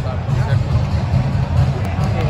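Football stadium ambience: crowd hubbub and nearby voices over a steady, heavy low rumble.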